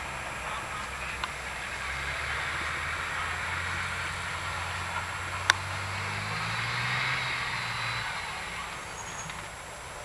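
A fire truck's engine running, rising in pitch for a couple of seconds before it cuts out about eight seconds in, over a steady rushing noise. There is one sharp click about halfway through.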